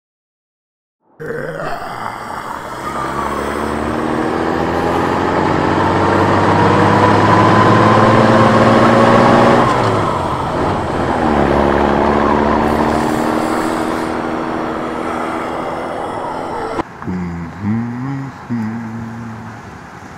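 Truck engine sound effect pulling away, its pitch climbing steadily, then dropping and picking up again about halfway through before running on at a steady pitch. Music takes over near the end.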